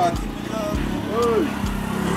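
Small motorcycle engine idling on a street, a low steady running sound under street noise, with a couple of brief vocal calls from a person about halfway through.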